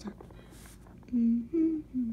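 A young person's voice humming short closed-mouth notes about a second in: a lower note, a higher one, then a falling one, like a hummed "mm-hmm".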